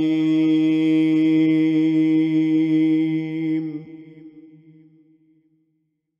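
A male Quran reciter holds the last long note of 'Sadaqallahul 'azim' at one steady pitch, then stops about two-thirds of the way in, and its echo fades away.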